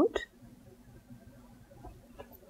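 The tail of a spoken word right at the start, then quiet hand-sewing: soft, faint rustle and a few light ticks as a needle and thread are worked through layered cotton fabric and batting.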